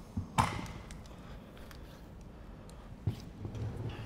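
Two sharp thumps: a loud one about half a second in and a softer one about three seconds in, with faint handling noise between them.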